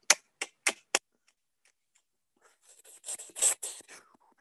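Four quick, sharp clicks about a quarter of a second apart in the first second. Near the end comes a soft, brief rubbing hiss.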